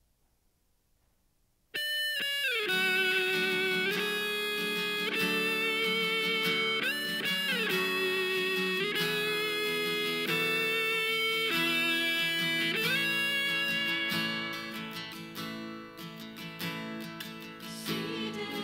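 A praise band's guitar-led instrumental intro starts suddenly about two seconds in. It plays long held notes that slide from one pitch to the next, then turns quieter and more strummed from about fourteen seconds.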